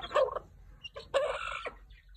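Chicken calling twice: a short call at the start, then a longer one about a second later.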